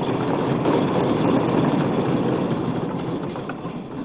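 A hall full of legislators applauding: a dense, steady clatter of many hands that slowly eases near the end.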